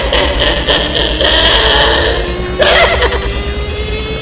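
Wavering, whinny-like cries in bouts, one long one in the middle and a short one near the end, over music with a steady low beat. A long tone rises slowly in pitch beneath them.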